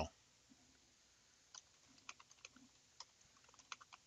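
Faint typing on a computer keyboard: an irregular run of quick keystrokes starting about a second and a half in.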